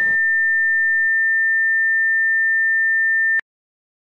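A single steady high-pitched electronic tone held on one unwavering pitch, which cuts off suddenly about three and a half seconds in.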